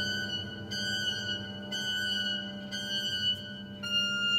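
Symphony orchestra playing a high pitched note that is re-struck about once a second over a sustained low chord.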